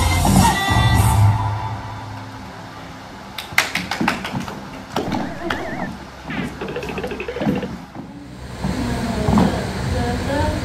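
Music playing, loud with a strong bass line for the first second or so, then quieter. Around the middle there is a cluster of sharp clicks or taps.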